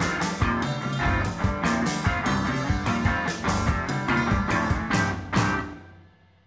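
Instrumental passage of a rock song, with a steady beat of about two hits a second under guitar. It stops abruptly near the end.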